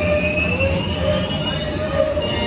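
Indoor roller coaster ride audio: a high whine rising slowly in pitch, like a ship's engine spooling up, over a steady low rumble from the coaster car on its track.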